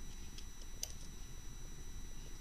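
A few faint small clicks of a size-two Allen wrench turning a set screw at the pinion gear of an RC car's brushless 540 motor, the clearest a little under a second in.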